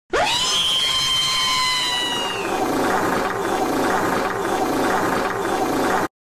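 A high motor-like whine that sweeps up quickly at the start, holds steady and fades after about two seconds, over a steady rushing noise that cuts off suddenly at the end.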